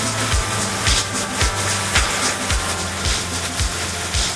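Electronic intro music with a steady drum beat, about two beats a second, over a sustained bass line.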